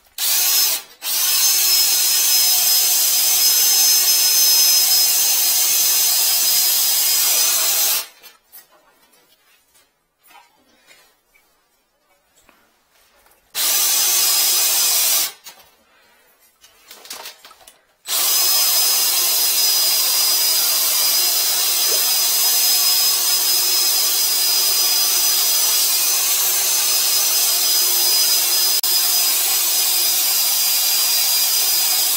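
Cordless drill spinning a flex-shaft drain cleaner in a clogged floor drain, a steady high motor whine. It runs for about seven seconds, stops, gives a short burst of about two seconds, then runs steadily again for the last twelve seconds.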